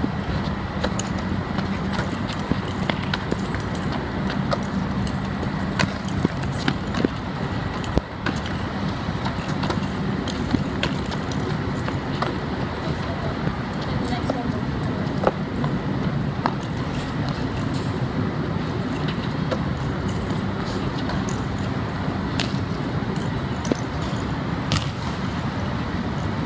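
Steady background noise with a low hum, broken by scattered short slaps and knocks as a ball is passed and caught and feet move on a hard court.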